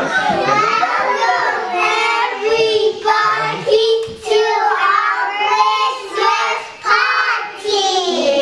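Young children singing together in high voices, in short phrases with a held note about four seconds in.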